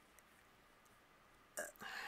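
Near silence: room tone, with a soft, brief noise near the end.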